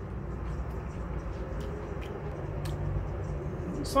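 Steady low background hum of a room, with a few faint clicks while a man chews a mouthful of noodles.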